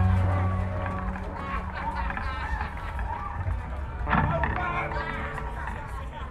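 A live band's last chord ringing out and fading after the final cymbal crash, under the voices of the audience, with a brief louder burst about four seconds in.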